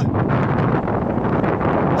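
Wind buffeting the microphone over ocean surf: a loud, steady rushing noise.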